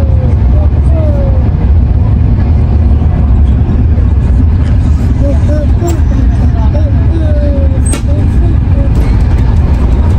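Steady low rumble inside the passenger carriage of a Frecciarossa high-speed train running at speed, with faint voices in the background.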